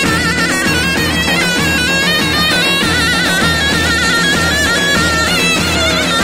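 Loud halay-style folk dance music: a shrill, reedy pipe melody full of quick ornaments over a steady drum beat and a low drone.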